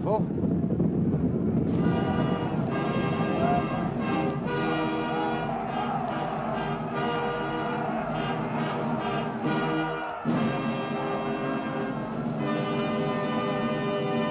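Orchestral music with brass playing held chords, entering about two seconds in over fading crowd noise, with a brief break about ten seconds in before the chords resume.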